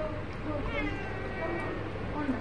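A cat meowing: one drawn-out, high-pitched meow that starts a little under a second in and lasts about a second.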